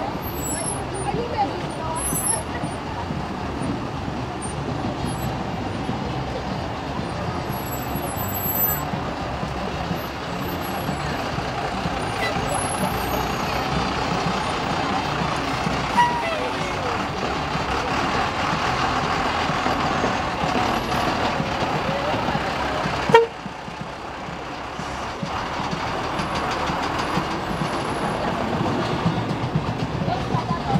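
Heavy trucks of a slow-moving float procession running at low speed, with people's voices mixed in. A single sharp knock comes about three quarters of the way through, after which the sound briefly drops quieter.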